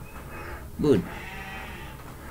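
A man's voice saying one short word, "good", falling in pitch about a second in, over a steady low background hum.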